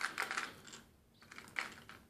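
Light clicking and rustling of a hard plastic fishing lure and its plastic blister pack being handled and set down, in two short clusters.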